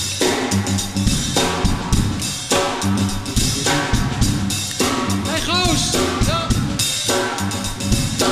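Live funk dance groove on drum kit and bass: a steady beat of kick, snare and rimshots under a repeating bass line. Brief sliding pitched sounds rise and fall over it between about five and six and a half seconds in.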